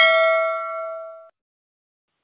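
Bell-like ding of a subscribe-button notification sound effect, a single ring of several tones that fades and then stops about a second in.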